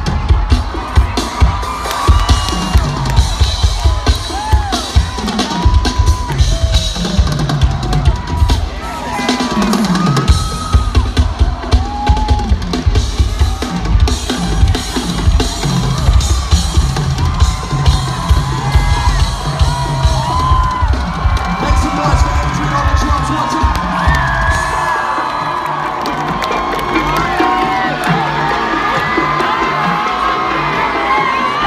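Live drum kit played fast, bass drum and snare hits driving hard, amplified through a festival PA and heard from within a shouting, whooping crowd. About 25 seconds in the drums drop out and the crowd cheering carries on.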